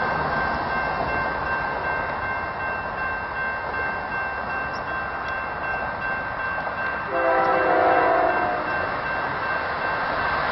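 Union Pacific freight train of empty oil tank cars rolling past, a steady rumble with a couple of thin high tones over it. About seven seconds in, the locomotive horn sounds one chord-like blast lasting about a second and a half.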